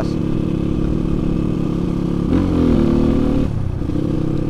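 Kawasaki KLX 150's single-cylinder four-stroke engine running steadily under way, its pitch rising a little over two seconds in, holding, then dropping about a second later. The engine is not bored up.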